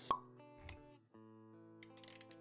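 Motion-graphics intro sound effects over soft instrumental music: a sharp pop just after the start and a short low thump a little later, with sustained music notes between.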